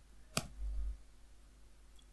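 A single sharp click at the computer about half a second in, followed by a brief low thump, then faint room noise.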